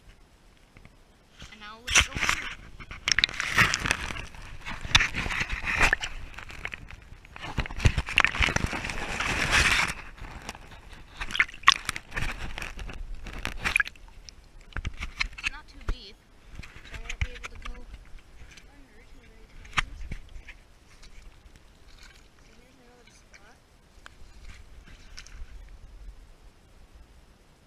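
Shallow creek water sloshing and splashing around a low-held action camera, in loud irregular surges over the first half, then sharp knocks and quieter splashing.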